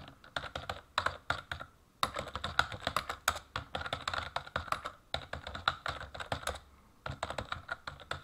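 Computer keyboard typing: quick runs of keystrokes in bursts, with short pauses between them.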